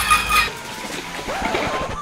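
A lidded container being shaken by hand, giving a rough, irregular rattling noise that is loudest in the first half second. Faint background music plays under it.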